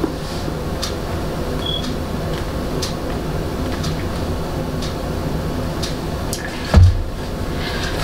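Steady low background hum with a few faint clicks, and one dull thump near the end.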